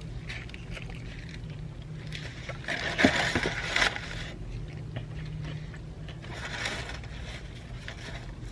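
Chewing a mouthful of fried chicken sandwich, with louder bursts of crinkling from its paper wrapper about three seconds in and again near seven seconds, over a steady low hum.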